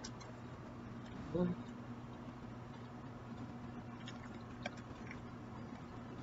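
Faint chewing of peanuts with the mouth closed, a few soft clicks of crunching about four to five seconds in. A short hummed "mm" comes about a second and a half in.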